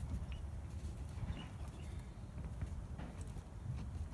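Low steady rumble with a few faint clicks and knocks from a spanner straining on a seized bolt.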